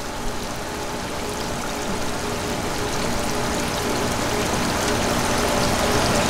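Steady rush of running water, growing slowly louder, with a faint steady hum beneath it.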